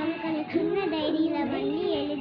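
A child singing a melody in a high voice, with sustained, bending notes.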